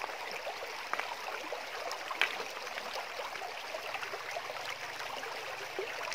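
Shallow stream running steadily over stones. A couple of brief splashes about one and two seconds in come from hands working stones in the water.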